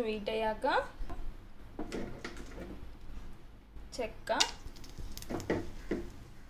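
A woman speaking in short phrases, with a few light clicks of whole spices dropped into an oiled pan near the end.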